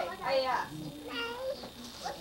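High-pitched voices giving a few drawn-out, wordless exclamations, like excited "ooh"s.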